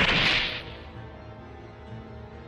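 A sharp whip-like swish from an anime soundtrack, loudest right at the start and fading within about half a second, over quiet background music.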